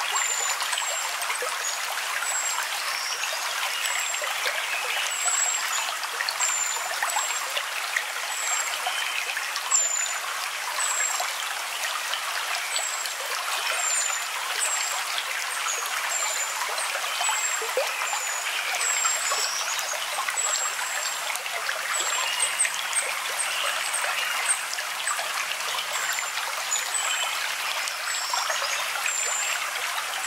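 Running water: a steady trickling stream. Short, high chirps repeat about once a second over it.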